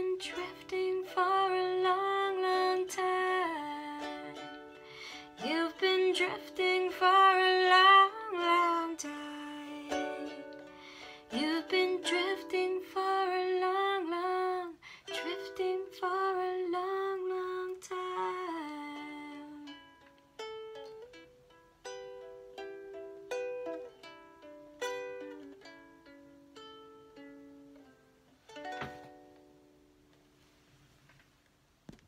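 Ukulele playing the song's closing instrumental bars, with a woman's wordless sung melody over it in the first half. From about twenty seconds in, the ukulele plays slow single notes alone and fades out. A brief knock comes near the end.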